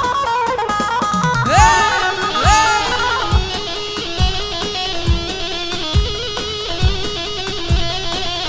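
Live wedding dance music: an electric plucked string instrument, played like a bağlama (saz), carries a melody with sliding, bending notes over a deep davul drum struck about once a second.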